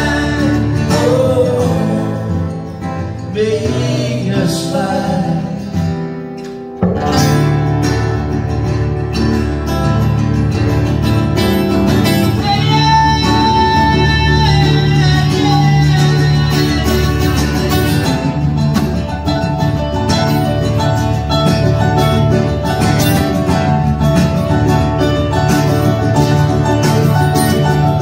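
Live amplified acoustic band music: acoustic guitars playing through a long stretch with no sung words. The music thins and dips, then comes back fuller and louder about seven seconds in.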